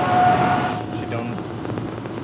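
Road and engine noise inside the cabin of a moving Audi A4, a steady rush with a faint held tone, which drops suddenly about a second in.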